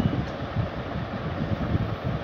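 Low, uneven rumbling background noise.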